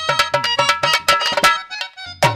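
Dholak and harmonium playing a fast folk interlude: rapid hand strokes on the dholak over the harmonium's steady held reed notes, the drum dropping away for a moment near the end.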